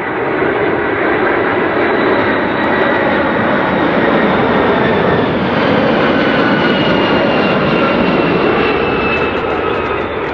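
Boeing 747SP's four turbofan engines on landing approach as the jet passes close by: loud, steady jet noise with faint whining tones that slowly fall in pitch as it goes past.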